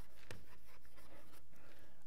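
Chalk writing on a blackboard: a few short taps and scratches of the chalk as the last letters of a word are written.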